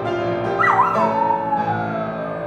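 Schnauzer howling along with a piano: one long howl starts about half a second in, high at first and then sliding down in pitch, over sustained piano notes.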